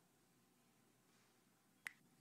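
Near silence: room tone, broken by one short, sharp click near the end.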